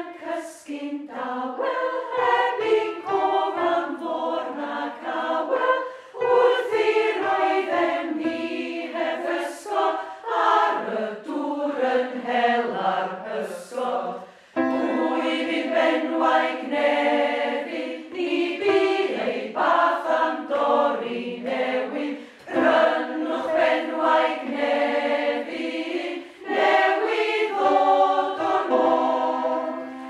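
A choir singing in long, held notes, with a short break about halfway through; the singing stops at the very end.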